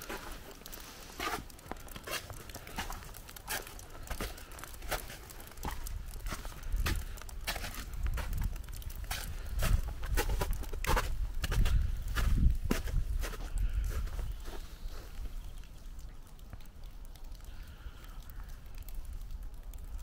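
Footsteps in snow: a string of irregular short crunches and clicks, with a low rumble, likely wind on the microphone, strongest in the middle stretch.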